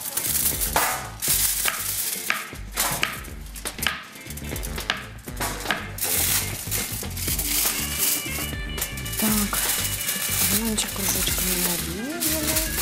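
Kitchen knife slicing a banana into rounds on a stone cutting board: irregular sharp taps of the blade on the board, under background music.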